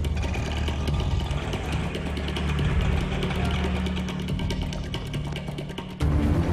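Auto-rickshaw engine running steadily under film background music.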